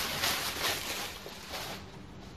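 Thin plastic bag crinkling and rustling as it is pulled off and away, dying down near the end.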